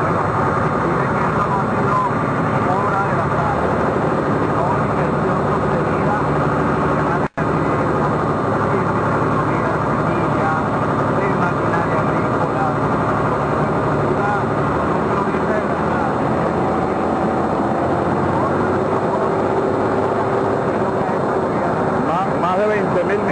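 Vehicle engine running steadily under a voice talking indistinctly. The sound cuts out for an instant about seven seconds in.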